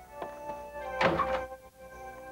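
A door shutting with a heavy thud about a second in, over held chords of background music.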